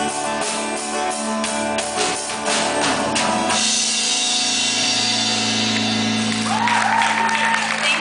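Live rock band with electric guitar and drum kit, the drums striking a steady beat about three times a second. About three and a half seconds in, the beat stops and a held chord rings on under a wash of cymbals. Near the end a voice rises over the ringing chord.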